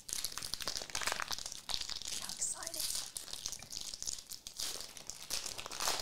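Foil trading-card pack wrapper being torn open and crumpled by hand, a continuous crinkling crackle full of sharp little ticks.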